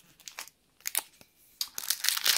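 Foil wrapper of a Pokémon Sun & Moon booster pack crinkling in a few short crackles as it is picked up and handled, with a cluster of crackles near the end.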